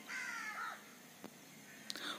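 A single faint bird call in the first second: one short note that falls slightly in pitch. Two faint ticks follow later.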